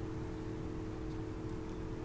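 Steady low background hum with a few held mid-pitched tones, unchanging throughout.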